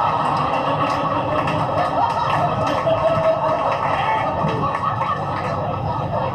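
A stand-up comedy recording playing over the cab's speakers: the audience laughing and applauding in a long, steady wave after a punchline.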